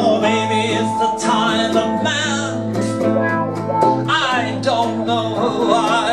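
Live small band playing: strummed acoustic guitar over an electric bass line, with electric guitar and a man's singing voice.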